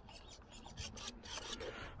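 Low, irregular scuffing and rustling from a handheld camera being carried across grass.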